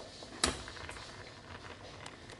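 Faint stirring of a wire whisk in a stainless steel saucepan of thick cheese fondue, with small ticks and one sharp click about half a second in.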